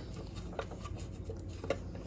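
Faint scraping and small clicks of a flat-head screwdriver turning an already-loosened steel screw in the underside of a Singer 301 sewing machine, with one slightly sharper click late on.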